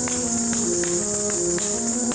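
Kathak ghungroo (ankle bells) jingling continuously with the dancer's footwork, a bright shimmer that stops abruptly at the end. Beneath it runs a melodic accompaniment of held notes stepping up and down.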